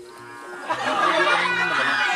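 Background music, then, from under a second in, a loud burst of men shouting together with the low calls of Madura racing bulls as they are caught after their run.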